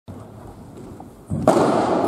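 Sports chanbara foam swords striking: after low hall sound, a sudden loud hit about one and a half seconds in, followed by a burst of shouting that carries on.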